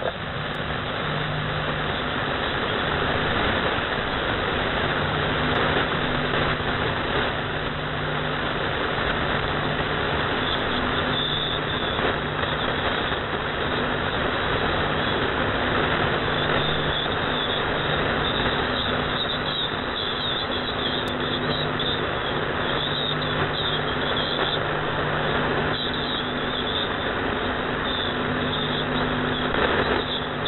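Shortwave receiver tuned to 3756 kHz giving out steady band noise and hiss, with a low hum that drops in and out a few times, while the voice on the frequency pauses.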